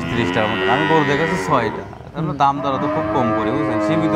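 Cattle lowing: a few shorter moos, then one long moo held at a steady pitch from about two and a half seconds in.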